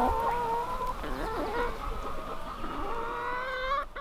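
A flock of hens calling and clucking, several long drawn-out calls overlapping with shorter ones.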